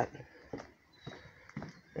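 A few soft footsteps on wooden deck boards, faint knocks about half a second apart near the start and again near the end.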